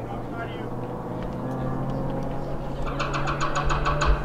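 A motor engine hums steadily, rising slightly in pitch. Near the end comes a quick run of about nine sharp clicks.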